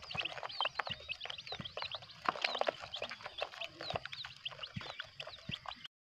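A group of young chicks peeping all together, many short high chirps a second overlapping, with scattered light clicks among them.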